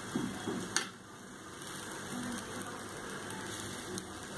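Egg omelette frying on a hot flat griddle, a steady soft sizzle, with a single sharp click just under a second in.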